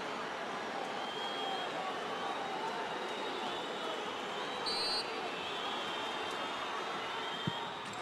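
Stadium football crowd noise, a steady mass of voices with scattered whistles, while a penalty is about to be taken. A short shrill referee's whistle sounds about five seconds in, and the dull thud of the kick comes near the end.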